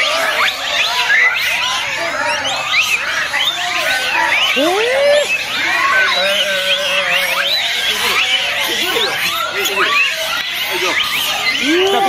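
A large troop of Japanese macaques calling all at once: a dense chorus of many short, overlapping rising and falling coos and squeals, with a longer wavering call about six seconds in. The monkeys are calling at feeding time as grain is scattered among them.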